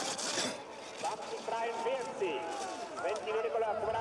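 Ski edges scraping on hard snow in a turn, heard as a brief hiss at the start. Then many spectators shouting and cheering along the course.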